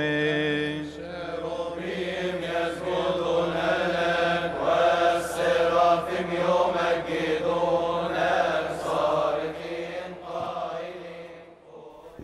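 Coptic liturgical chant: a priest's held sung note at the microphone breaks off about a second in, then the chanting carries on, rising and falling, and fades away near the end.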